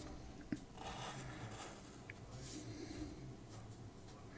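Faint felt-tip marker strokes scratching across paper as an outline is drawn, several short strokes in a row. A single sharp click comes about half a second in.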